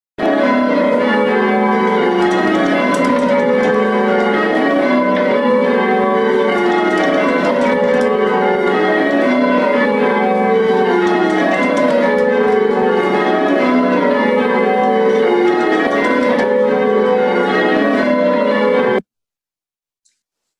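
A ring of church bells in English change ringing, the bells striking one after another in repeated descending rows. It cuts off suddenly about a second before the end.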